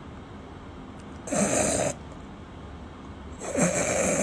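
A man fake-snoring as if asleep: two loud snores, the first about a second in and the second starting near the end.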